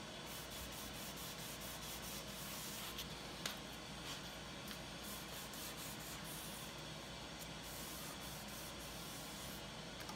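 Hand wet sanding with fine 800-grit paper and soapy water over the coated wooden hull of a half model: a faint, steady rubbing. A light tick about three and a half seconds in.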